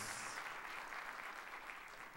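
Faint, thin applause from a sparse audience in a large auditorium, slowly dying away.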